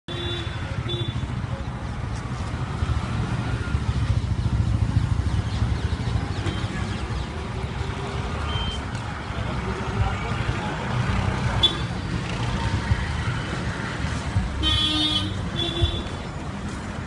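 Vehicle horns honking: short toots near the start and a longer, louder horn blast near the end, over a steady low rumble and indistinct voices.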